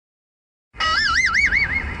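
A warbling electronic tone over a CB radio, its pitch swinging up and down about four times a second. It starts just under a second in and fades near the end.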